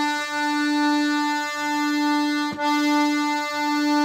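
Excelsior accordion reeds sounding one sustained note for a tuning check, with a slow wavering in loudness. The note breaks off briefly about two and a half seconds in, then the same note sounds again.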